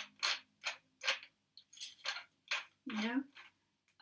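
Hand-twisted pepper mill grinding mixed three-colour peppercorns: about six short rasping turns, one every half second or so.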